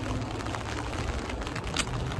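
Rain falling on an umbrella held overhead, a steady hiss with faint scattered ticks of drops, over a low rumble.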